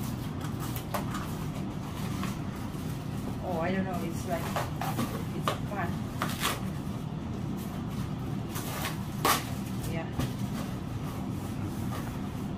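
Cardboard boxes and packaging being handled: scuffs, rustles and a few sharp knocks as boxes are lifted and pulled apart, over a steady low hum. A brief murmur of voice about four seconds in.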